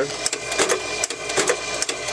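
Automatic wire-cutting machine running, feeding and chopping 22-gauge brass wire into short lengths with a rapid series of regular clicks.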